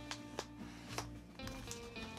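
Quiet background music, with a few short sharp clicks and rustles from a cardboard vinyl-record mailer being handled and opened.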